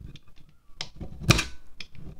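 A serrated knife scraping shavings off a wax candle: a few short, crisp scrapes, the loudest about halfway through.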